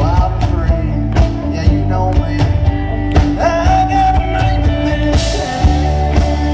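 Live country rock band playing: steady drums, bass and guitars, with a harmonica lead played into the vocal microphone through cupped hands, its notes bending and held.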